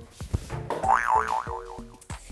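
Comic 'boing' sound effect: a wobbling, spring-like twang whose pitch swings up and down about four times, over light background music.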